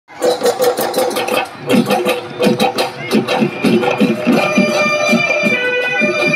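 Live Bihu folk music: dhol drums beating a fast, even rhythm with cymbal clashes, joined about four seconds in by the steady, reedy wail of a pepa hornpipe.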